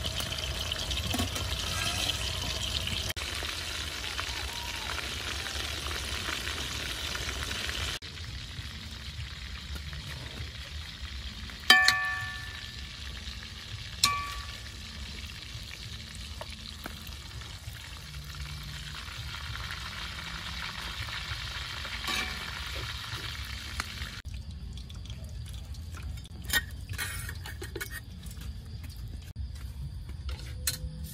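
Fish frying in hot oil in a metal wok, a steady sizzle that is louder early on while oil is ladled over the fish, then softer. Twice near the middle a metal spatula strikes the wok with a sharp ringing clink, and light utensil clicks follow near the end.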